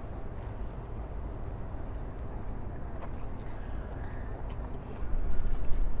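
Wind buffeting a clip-on lapel microphone: a steady low rumble that swells into stronger gusts near the end.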